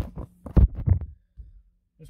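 Phone handling noise: a run of irregular thumps and rubbing knocks on the microphone as the phone is moved and settled into place, loudest about half a second in and stopping after about a second.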